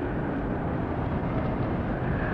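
Steady background noise with no speech: the hum and hiss of an old hall recording during a pause in the sermon.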